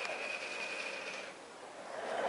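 Small electric motor giving a steady high-pitched whine that stops about a second and a half in, the sound of a camcorder's zoom lens motor driving in.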